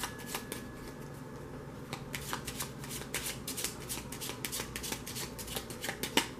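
A tarot deck being shuffled by hand: a fast, uneven run of crisp card flicks and taps, thinning out for a moment about a second in and then quickening again.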